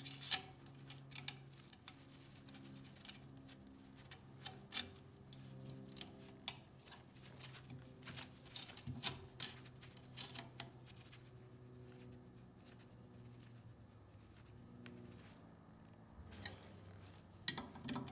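Scattered light metallic clicks and ticks from fitting a stainless steel tubing run into compression fittings and tightening the nuts with a wrench, with a cluster of louder clicks about nine to ten seconds in and again near the end.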